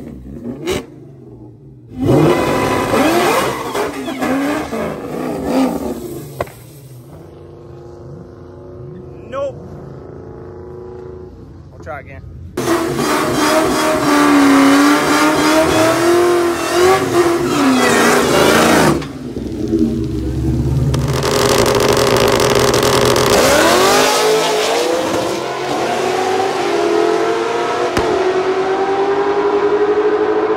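Supercharged V8 of a 2003 Mustang SVT Cobra revving hard through burnouts, pitch rising and falling. The sound breaks off and restarts several times as separate clips are cut together, with a quieter, steadier stretch of engine running in the middle.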